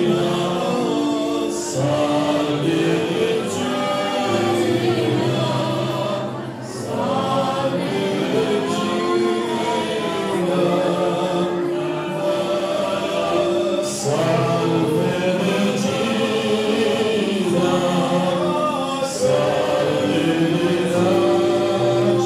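Many voices singing a hymn together in long held notes, with a short dip in the singing about six and a half seconds in.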